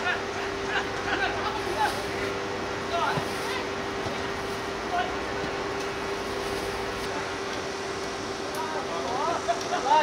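Footballers' distant shouts and calls over a steady hum, the calls growing louder and closer near the end.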